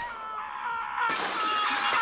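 Glass shattering and crashing in a rowdy commotion, growing denser about a second in, with a few held tones underneath.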